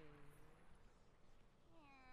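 Near silence with faint, quietly played anime dialogue: a short low "Oh?" at the start, then another brief voiced sound rising and falling near the end.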